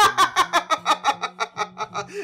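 A man laughing heartily: a fast, even run of loud 'ha' bursts, about six a second.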